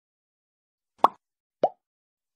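Two short pop sound effects, each a quick upward-bending plop, about half a second apart.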